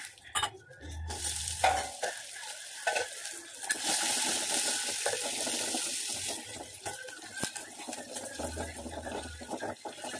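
Chopped onions and dried red chillies sizzling in hot oil with peanuts in a kadai. The sizzle starts about a second in and swells loudest through the middle, with a spatula knocking and scraping against the pan.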